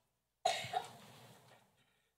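A single cough about half a second in, fading out over about a second, with dead silence before and after.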